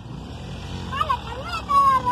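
A motorcycle engine running as the bike rides along the road close by, its rumble growing louder over the first second.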